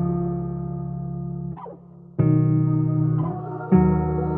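Instrumental beat built on held guitar chords. The sound dips briefly with a short falling sweep just before the middle, then fresh chords come in about halfway and again near the end.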